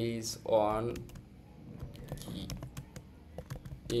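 A short voiced sound in the first second, the loudest moment, then typing on a computer keyboard: a run of quick, uneven key clicks as a search phrase is entered.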